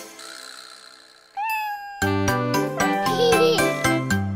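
The music breaks off and a faint tail fades out. About a second and a half in comes a single short cat meow. Upbeat children's music starts again halfway through.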